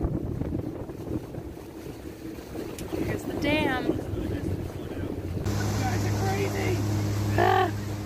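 Pontoon boat under way: wind and water rumble, with the boat's outboard motor humming steadily and clearly from about five and a half seconds in. A person's voice rises over it in two short wavering calls.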